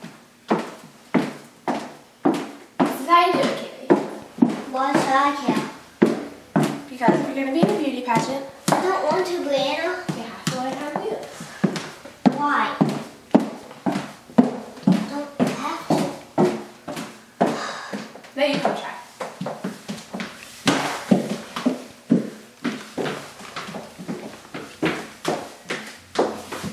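Indistinct talking, with high-heeled shoes clacking in a regular walking rhythm on a hardwood floor.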